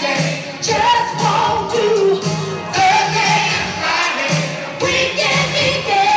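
Live 1980s R&B song played through a concert PA: a vocalist singing over a band with a steady beat.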